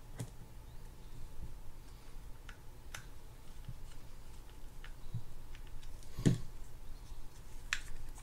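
Scattered small clicks and taps of metal on metal as a mini screwdriver and the bail arm parts are worked onto a spinning reel's rotor, with one fuller knock a little after six seconds.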